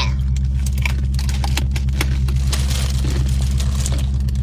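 Steady low hum inside a car, with scattered light clicks and crinkling rustles from cups and containers being handled.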